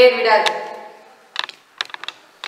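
A woman's voice for a moment, then a run of light, sharp, irregular clicks and taps as cloth is pulled and pressed onto a round wooden aari embroidery frame.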